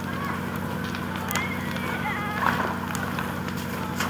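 Steady drone of a fire engine's pump engine running to feed the hose, with faint voices of people nearby. A few sharp cracks from the burning timber house come about a second in and again midway.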